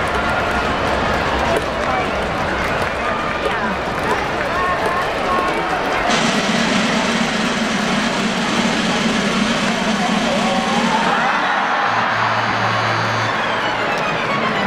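Stadium crowd hubbub with many voices, joined about six seconds in by music over the public-address system.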